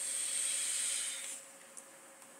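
A steady hiss of air drawn through an e-cigarette pen during an inhale, lasting about a second and a half and then stopping.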